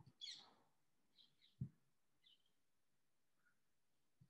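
Near silence: room tone, broken by a short hiss at the start, a faint knock about a second and a half in, and a few faint high chirps.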